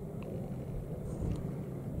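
Steady low outdoor rumble, with a few faint ticks.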